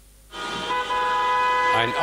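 Car horns honking in a motorcade: several long horn blasts sounding at once as a steady chord, starting about a third of a second in and getting louder about a second in. The sound is played back from a TV news report. A man's voice begins speaking over them near the end.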